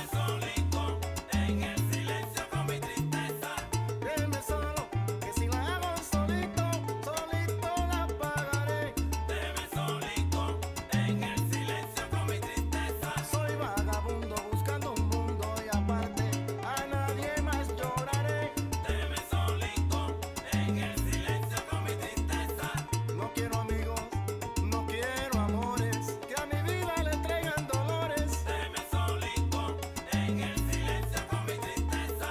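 Salsa music played without singing, an instrumental passage with a syncopated bass line repeating under horn and piano lines at a steady dance tempo.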